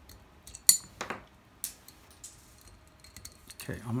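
Small metal clicks and clinks of pistol slide parts being handled and pressed into place during striker assembly. One sharp metallic click with a brief ring comes under a second in, followed by a few lighter taps.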